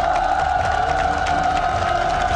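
Studio panel clapping under one long held note that glides up into place and then holds steady.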